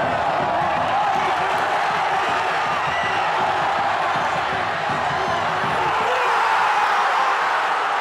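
Football stadium crowd, a dense mass of shouting and chanting voices, growing a little louder near the end as the attack ends in a goal.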